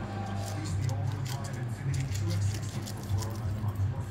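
A dog licking and lapping at a raw egg on a tile floor, making quick small wet clicks and smacks, over a steady low hum.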